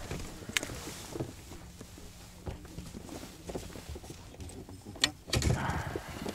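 A Shimano Stadic spinning reel is wound steadily with a faint whirr while a hooked zander is brought in, with scattered light clicks of tackle against the boat. About five seconds in there is a sharp click, and the reeling stops; then comes louder handling noise as the fish is swung aboard.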